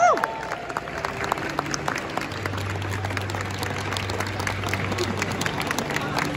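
Audience applauding in a large indoor hall: many quick, scattered hand claps.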